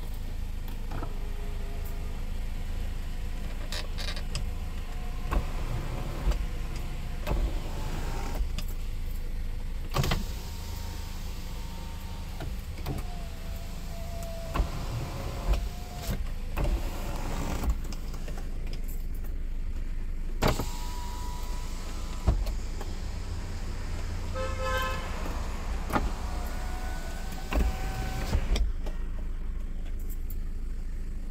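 Power window motors of a 2013 Kia running the glass up and down several times. Each run is a whine lasting one to three seconds, and several end in a knock as the glass stops. The glass moves smoothly.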